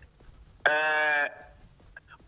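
A man's voice holding one drawn-out hesitation vowel, a steady "aah" of about two-thirds of a second in the middle of his speech.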